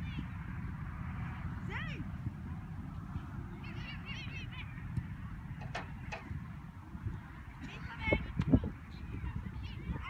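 Distant shouts and calls of youth soccer players across the field, short and high-pitched, over a steady low rumble of wind on the microphone. A couple of low thumps stand out about eight seconds in.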